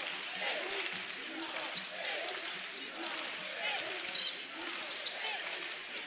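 Basketball arena sound during live play: a steady crowd murmur with faint distant voices, and a basketball bouncing on the hardwood court now and then.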